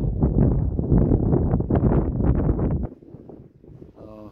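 Wind buffeting the microphone in loud, uneven gusts, cutting off abruptly about three seconds in, after which only a much quieter outdoor background remains.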